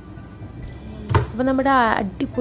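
A glass baking dish set down on a bamboo cutting board with a single knock about a second in, over background music; a voice comes in straight after the knock.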